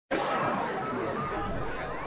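A news show's intro sting: a dense, noisy swell that starts suddenly, slowly thins out and ends in a rising sweep.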